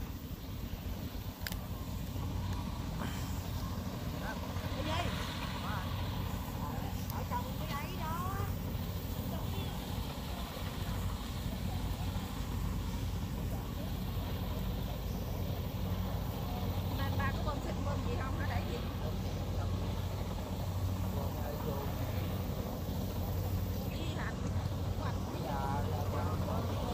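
Rice combine harvesters' diesel engines running steadily as they cut, a low even drone.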